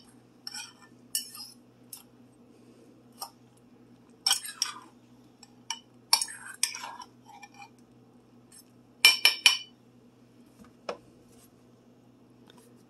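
Metal fork clinking and scraping against a ceramic mug as bread cubes are stirred into beaten egg and milk, in irregular bursts of a few clinks with short pauses between.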